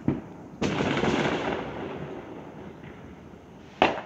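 Fireworks going off. There is a sharp bang at the start, then a louder burst about half a second in that lasts about a second before fading, and another sharp bang near the end.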